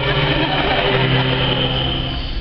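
Men's a cappella ensemble: a bass voice holds a steady low note, broken off briefly about a second in, under a noisy, breathy vocal sound from the other singers.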